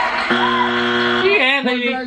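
Game-show music sting: a held chord lasting about a second, then a man's voice begins near the end.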